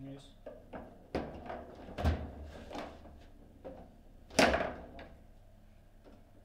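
Foosball play: a string of sharp knocks and clacks as the ball is struck by the plastic figures on the rods and bangs against the table, with the loudest knock about four and a half seconds in.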